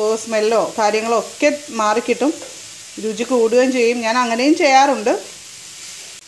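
Speech in the narrator's voice most of the way through, over cabbage sizzling as it is stir-fried in a pan with a wooden spatula; the sizzling shows between phrases, about two seconds in and near the end.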